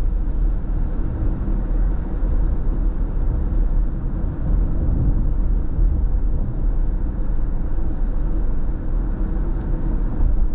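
Steady road noise inside a moving car's cabin: a low rumble from the tyres and engine on wet pavement, with no sudden events.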